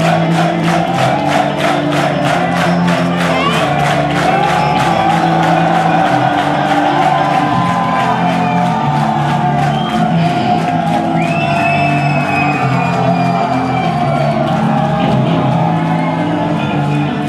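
Live metal concert played loud in a large hall: music with sustained pitched layers and a fast even beat, about four hits a second over the first few seconds, with a crowd cheering over it.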